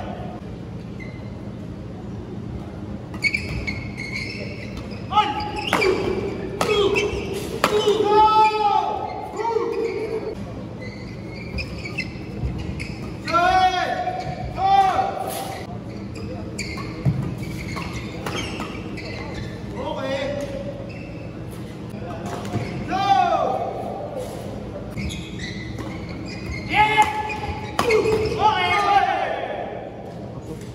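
Badminton players' court shoes squeaking on the court mat in several bursts as they move during rallies, with sharp racket-on-shuttlecock hits, over a steady low hum from the hall.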